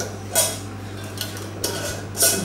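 A metal screw lid being turned on a filled glass jar, giving a few short scraping clinks of metal on glass.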